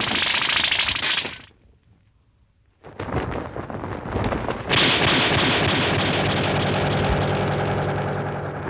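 Fight-scene sound effects of a spinning thrown wheel weapon: a loud rushing, rattling whir that cuts off about a second and a half in. After a short silence a rapid clatter starts and swells into a long, steady whirring rattle with a low hum under it.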